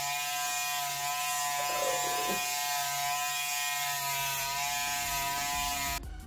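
Corded electric hair clippers with a comb guard attached, buzzing steadily as they cut short hair at the back of the head.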